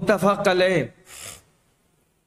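A man's voice speaking for just under a second, followed by a short audible in-breath, then silence.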